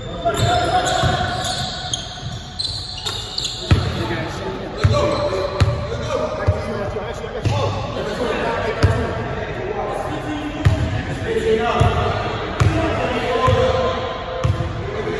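A basketball being dribbled on a hardwood gym floor, bouncing about once a second from about four seconds in, with the thumps echoing in the large hall.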